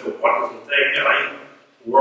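A man's voice speaking.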